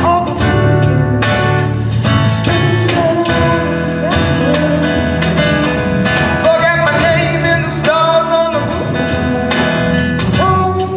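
Live acoustic band: a woman singing held, gliding notes over a strummed acoustic guitar and electric bass.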